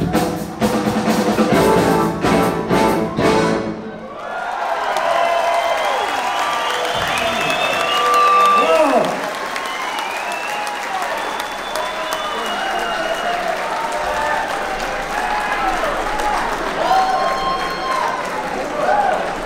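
Live rock band, led by an archtop electric guitar over drums, playing the last seconds of a song. About four seconds in the music stops and the audience breaks into applause, cheering and whistles that carry on.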